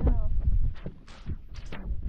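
Boots scuffing and knocking on loose rock in a few short strokes, over wind rumbling on the microphone. A voice is heard briefly at the start.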